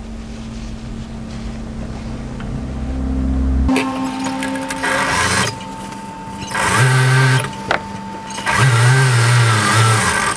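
Industrial lockstitch sewing machine: a steady low hum, then, after an abrupt change about four seconds in, three short runs of stitching. The last run, near the end, is the longest.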